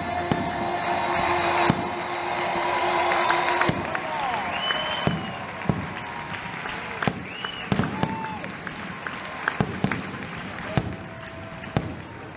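Aerial fireworks bursting overhead: a string of sharp bangs, one every second or so, some doubled. Crowd voices run beneath, and steady music tones are heard in the first few seconds.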